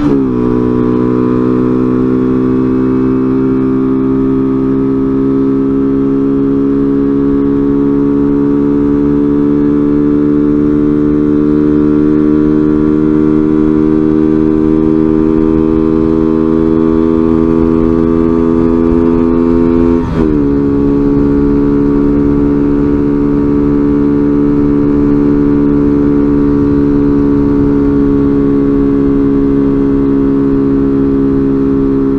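Small motorcycle's engine running at road speed under the rider, its note climbing slowly as it gains speed. The pitch drops sharply at the very start and again about two-thirds of the way through as the rider shifts up a gear.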